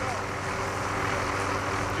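Steady engine drone, a constant low hum with an even hiss over it.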